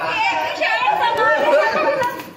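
Several people talking and calling out at once, their voices overlapping in lively group chatter.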